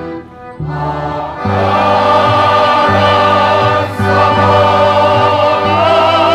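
Mixed choir singing with accordion accompaniment. After a short lull just after the start, the accordions' held chords come back in and the full choir enters louder about a second and a half in, the voices singing with vibrato.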